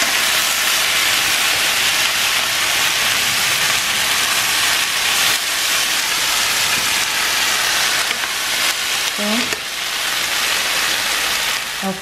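Pumpkin gnocchi, cherry tomatoes and baby spinach sizzling in olive oil in a frying pan, stirred as the spinach wilts. The sizzle is a loud, steady hiss.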